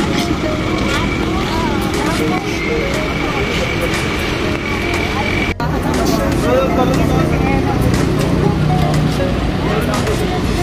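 Several people chatting and calling to one another over the low, steady running of a vehicle engine.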